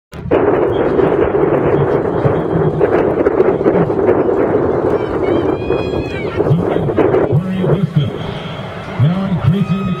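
General crowd chatter, a dense steady murmur, with a public-address announcer's amplified voice talking through the second half.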